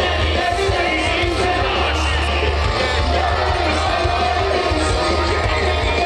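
Loud live band music over a large outdoor PA, heard from inside the crowd: a heavy, steady bass under singing.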